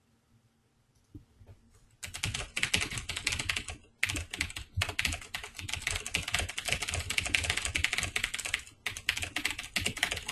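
Rapid typing on a computer keyboard, starting about two seconds in and running on with two brief pauses.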